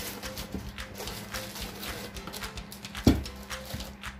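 Background music over the clicks and knocks of a PC power supply's cardboard box being opened and handled, with one loud thump about three seconds in.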